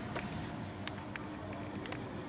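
Faint outdoor background noise, a low steady rumble with a few soft clicks scattered through it.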